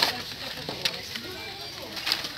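Cardboard-and-plastic blister packs of toy cars being shuffled by hand, giving a few short plastic clicks and rustles, with faint voices behind.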